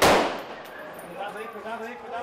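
A single gunshot at the very start, loud and sudden, its echo dying away over about half a second.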